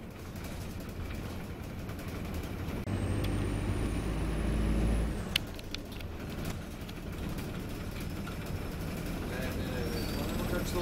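Cabin sound of an Optare Versa single-deck bus on the move: a steady drone of engine and road. Its diesel engine grows louder for about two seconds with a faint rising whine as it accelerates, then drops back suddenly, followed by a short sharp click.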